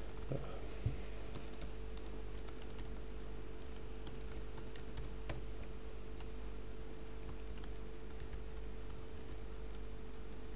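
Computer keyboard typing in short, irregular runs of light keystrokes over a steady low electrical hum.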